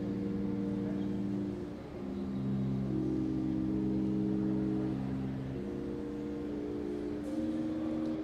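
Pipe organ playing slow, held chords with no vibrato. The chord changes about two seconds in, again past the middle, and once more near the end, and a low bass note sounds under the second chord.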